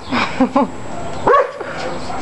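A small dog barking: several short barks, the loudest a little past halfway.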